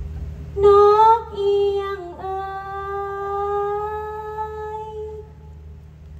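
A woman singing in likay style: a short sung phrase about half a second in, then one long held note that fades out near the end.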